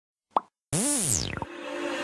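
Sound effects for an animated subscribe graphic: a short pop, then a sliding tone that rises and falls in pitch, followed by a faint held note.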